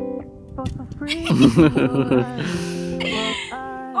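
Background music with plucked guitar, with voices and laughter over it near the end.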